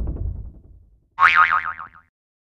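Cartoon boing sound effects. A low boing fades out over the first second, then a higher boing with a wobbling pitch sounds near the end.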